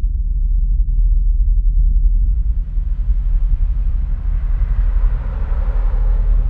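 Deep, steady low rumble of a trailer-style sound effect, with a hissing swell rising in over it about two seconds in and building toward the end.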